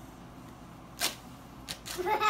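Quiet room with three brief, sharp noises: one about a second in, then two in quick succession near the end.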